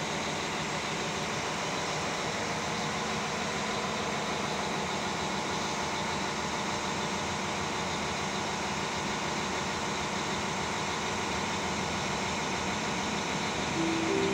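Steady mechanical hum and rumble of trains at a railway station, even in level throughout, with no build-up as the distant electric multiple unit approaches. A short steady high note starts right at the end.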